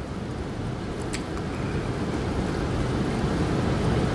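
Steady low rumbling background noise that slowly grows louder, with a faint click about a second in.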